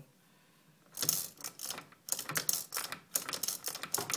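Plastic bead chain of a roller shade being pulled by hand, rattling through its clutch and the wall-mounted cord safety tensioner: a fast, irregular run of sharp clicks starting about a second in.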